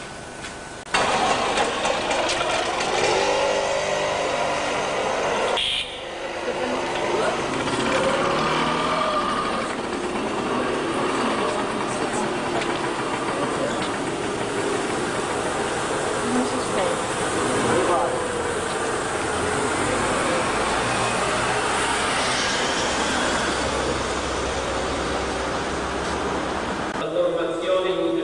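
Street sound from a camcorder's own microphone: people talking and motor vehicle engines running. It starts abruptly about a second in and dips briefly near six seconds. A rising engine note comes near the end.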